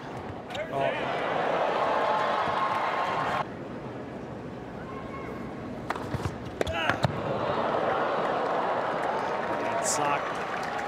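A tennis ball struck hard on a serve, then a crowd cheering and shouting that cuts off abruptly about three and a half seconds in. A few sharp ball strikes of a rally follow around six to seven seconds in, and the crowd cheers again.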